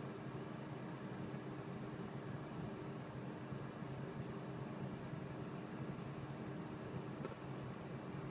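Steady low hum of a stationary car idling, with its ventilation fan running, heard inside the cabin.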